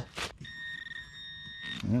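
Metal detector's target signal: a steady, high electronic tone held for just over a second.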